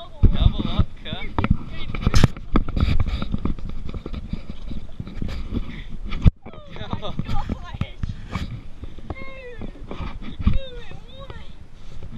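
Indistinct talking mixed with knocks and rubbing from an action camera being handled in a canoe. The sharpest knocks come just after the start, at about two seconds and at about six seconds, where the sound briefly cuts out.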